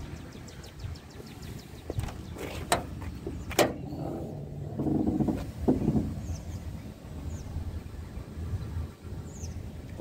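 A few sharp clicks and knocks from a pickup truck's hood being unlatched and lifted, over a low steady rumble.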